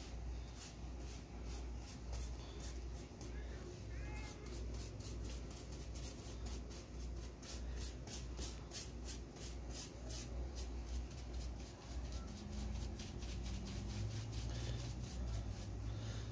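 Paintbrush bristles stroking paint onto wooden baseboard trim: a faint, rhythmic scratchy swishing, about three short strokes a second.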